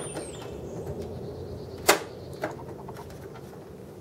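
Handling a SATA cable inside a desktop PC case: one sharp plastic click about two seconds in, then a softer click half a second later, over a faint steady background hiss.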